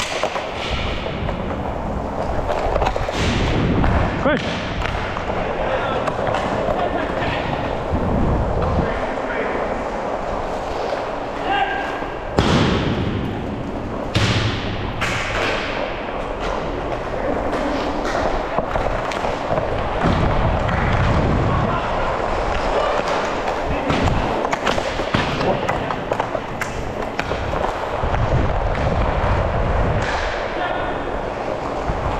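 Inline hockey play: skate wheels rolling on plastic sport-court tiles, with repeated stick, puck and board knocks and two sharp cracks about halfway through, plus players' voices.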